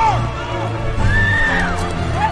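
Film score music under people shouting and screaming in panic, with one long, drawn-out scream about a second in.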